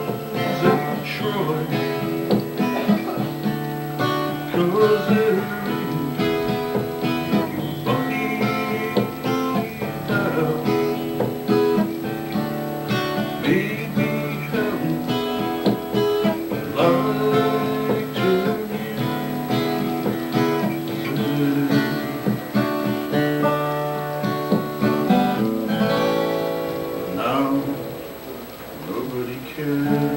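Strummed acoustic guitar with a rack-held harmonica playing over it, an instrumental break in a live folk-blues song.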